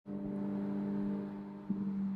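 A steady low mechanical hum with several overtones, from a motor running at a constant speed. It eases slightly near the end.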